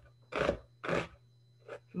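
Chef's knife slicing a red onion thinly on a cutting board: two crisp cuts about half a second apart, then a fainter third cut near the end.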